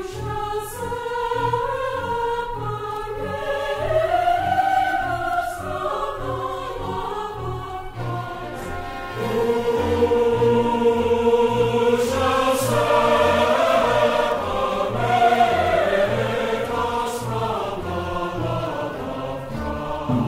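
Recorded sacred music: a choir singing long held lines over accompaniment with a steady, evenly pulsing bass, swelling louder a little before halfway.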